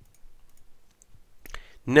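A couple of quick computer mouse clicks about a second and a half in, over low room tone.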